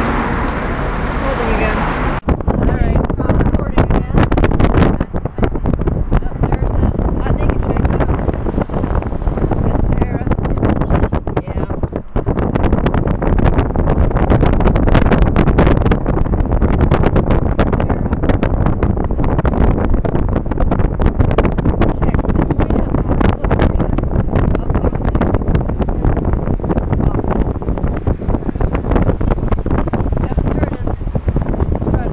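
Wind buffeting the microphone over the steady road noise of a moving car, a loud continuous rumble with a few brief dips.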